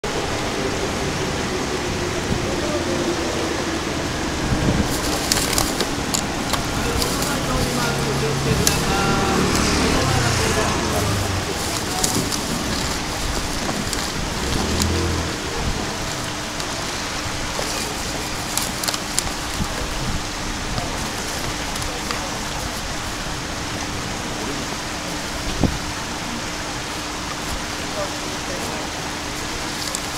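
Steady rush of water flowing over a low step in a concrete river channel, mixed with street traffic and voices that come and go in the first half.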